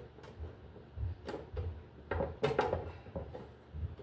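Handling noise from a mercury vapor light fixture housing being fitted together by hand: several light knocks and clicks with some scraping.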